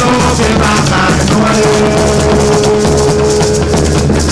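Live Garifuna music: a pair of maracas (sisira) shaken in a steady rhythm over Garifuna hand drums, with a long held note through the middle.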